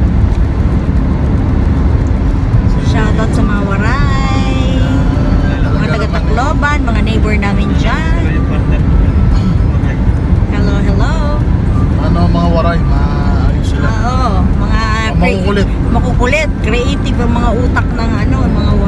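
Steady low road and engine rumble inside a moving car's cabin. For most of the time a voice sounds over it in sliding, wavering pitches.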